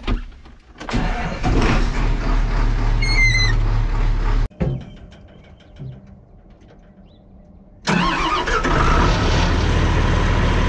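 A machine's engine runs loudly for a few seconds, heard from inside a tractor cab. After a short quiet lull, a John Deere wheel loader's diesel engine starts suddenly about eight seconds in and settles into a steady run.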